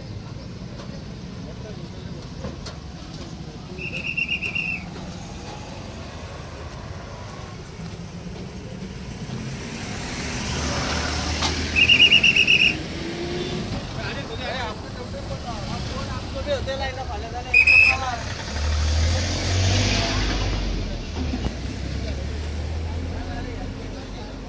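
Traffic police whistle blown in three short trilled blasts, about four, twelve and seventeen seconds in, the middle one the loudest, over the noise of passing road traffic, with a low rumble of a heavier vehicle going by around twenty seconds in.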